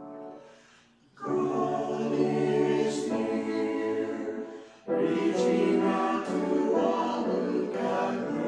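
Small mixed church choir singing, entering about a second in as a piano chord dies away; they hold one long phrase, take a quick break just before the middle, then go straight into the next.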